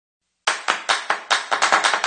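Hand clapping that starts about half a second in: quick, uneven claps, several a second.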